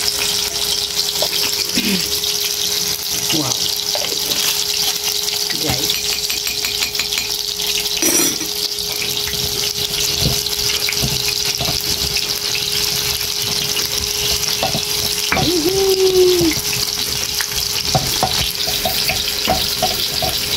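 Hot oil sizzling steadily as small balls of food deep-fry in a pan, with a faint steady hum underneath and a few scattered clicks.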